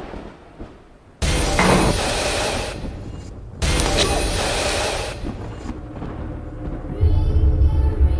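Film sound effects: two sudden loud booming hits about two and a half seconds apart, each trailing off over a second or so. Near the end, music with a heavy bass comes in.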